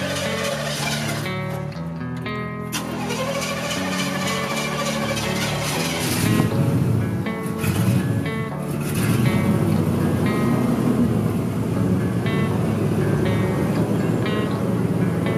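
Background music with guitar throughout; about six seconds in, a pickup truck's engine starts and keeps running as a rough low rumble under the music, with two surges in level soon after it starts.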